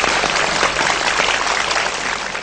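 Studio audience applauding, a dense, steady clatter of many hands clapping.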